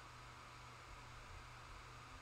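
Near silence: faint steady hiss and low hum of microphone and room tone.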